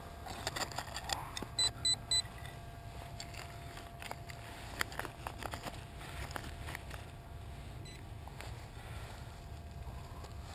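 A metal detector gives three quick high beeps about a second and a half in, signalling a target. Around them, a digging knife and gloved hand scrape and rake through mulch chips with scattered clicks.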